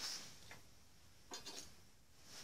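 Quiet workshop room tone with a few faint handling noises: a soft tick about half a second in and a brief rustle a little past the middle.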